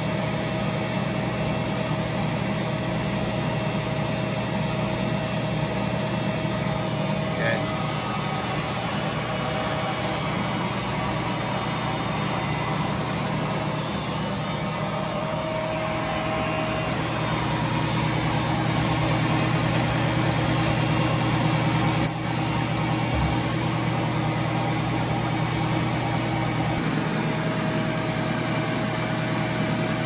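Fortuna NAF470G band-knife splitting machine running with a steady hum, a little louder for several seconds past the middle, as it splits heavy conveyor belting. One short click about two-thirds of the way in.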